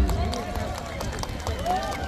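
Loud bass-heavy music from the stage speakers cuts off at the start, leaving a crowd's chatter, with several voices talking at once.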